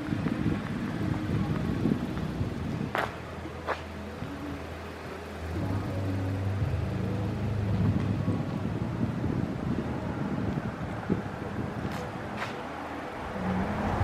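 Outdoor background noise with the low hum of a vehicle engine, louder in the middle, and a few faint clicks.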